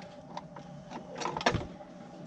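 An ATV's front steering knuckle and hub being worked off the CV axle: a few light metal clicks and knocks, the sharpest about one and a half seconds in.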